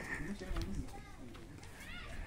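Faint, distant voices in low background noise, no one speaking close by.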